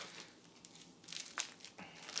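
Plastic packet of Coopers carbonation drops crinkling as it is picked up and handled: a faint click about a second and a half in, then crinkling starting near the end.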